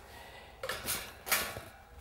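Wire top of a guinea pig cage rattling and clattering as it is handled off its plastic base, in two short bursts about half a second apart near the middle.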